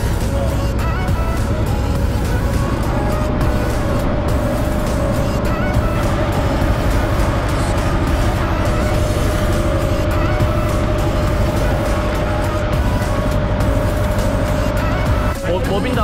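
Small river tour boat's engine running steadily under way, a loud low drone with a held higher tone over it.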